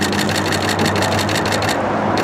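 Street traffic: car engines running on the road alongside, a steady hum with a rapid, even ticking of about six a second running through it.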